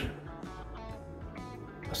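Quiet background music with steady plucked notes.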